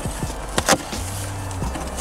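Cardboard shipping-box flaps being pulled open by hand, giving a few sharp cardboard snaps, the loudest two about half a second in. A brief low hum follows about a second in.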